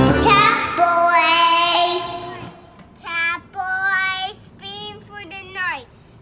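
The song's accompaniment stops and a held sung note with vibrato fades out. Then, about three seconds in, a young child sings alone in short phrases that slide up and down in pitch.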